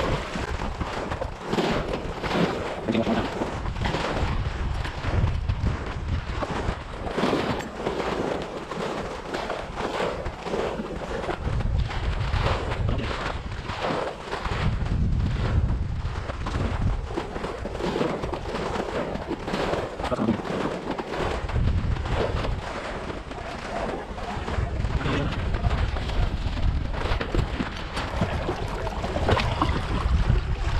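Small waves lapping and splashing against a concrete wall at the water's edge, with many short splashy crackles and gusts of wind rumbling on the microphone now and then.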